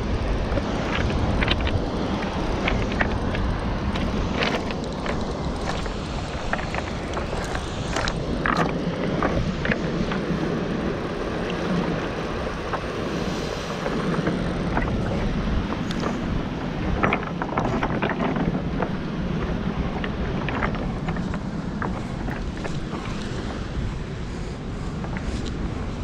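Steady rush of fast-flowing canal water under heavy wind buffeting on the microphone, with scattered short clicks.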